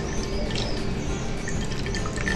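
Avocado liquid trickling and dripping from a hand-squeezed cloth bag of cooked avocado pulp into a glass bowl, with faint high chirps.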